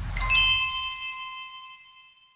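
Logo-reveal sound effect: a low whoosh swells up and a high, several-note ding enters just after it, ringing on and fading away over about two seconds.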